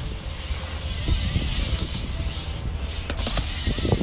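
BMX bike's tyres rolling and scrubbing on concrete during a whiplash on a quarter pipe, a steady hiss over a low rumble. There is a knock about three seconds in and a sharper one near the end as the bike comes down.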